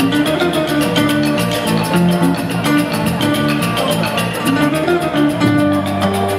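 Live Balinese jazz-fusion band playing: double-neck electric guitar and electric bass over a suling bamboo flute, wooden mallet percussion and a Balinese hand drum, with a moving bass line under a continuous melody.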